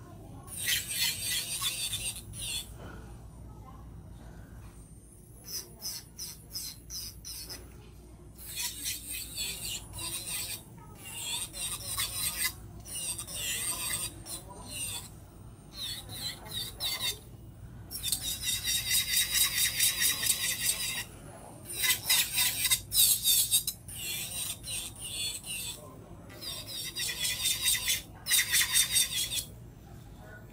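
Electric nail drill with a sanding band bit grinding down an artificial nail, a high-pitched whine that comes in repeated bursts as the bit is pressed to the nail and lifted off.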